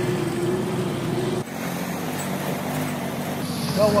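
A vehicle engine runs steadily with road traffic noise around it. The sound changes abruptly about a second and a half in, and a steady low engine hum continues after that.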